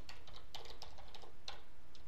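Typing on a computer keyboard: a quick, irregular run of key clicks as a command is typed.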